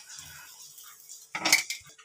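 Steel kitchenware being handled: light scraping and rattling, then one sharp metallic clatter about one and a half seconds in.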